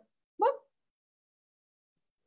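One short vocal sound from a woman's voice about half a second in, then dead silence.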